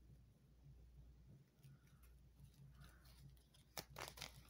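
Near silence: room tone with a faint low hum, a couple of faint rustles and a soft click near the end.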